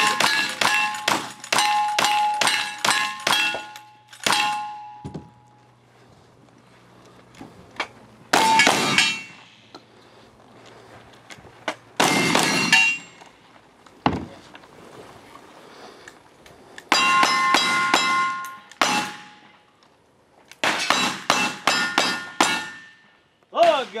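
Cowboy action gunfire, including a lever-action rifle, shot at steel plate targets. Each hit is followed by the ring of the struck steel. A fast string of about ten shots opens, a few single shots follow with gaps between them, and two more quick strings come near the end.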